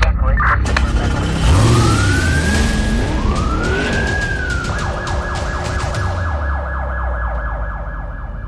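Police siren sound effect in a news title sequence: two rising wails, then a fast yelping warble from about halfway through. It runs over a deep steady rumble with sharp swooshing hits.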